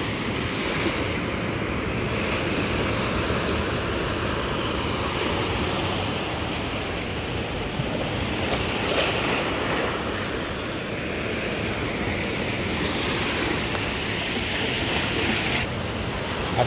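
Ocean surf washing in a steady rush that swells a little now and then, with wind blowing on the microphone.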